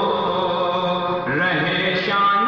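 A man's voice chanting a devotional poem into a microphone in long, held melodic notes that slide and waver in pitch.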